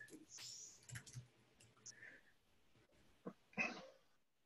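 Near silence on an open call: a few faint, soft clicks and one brief faint sound near the end.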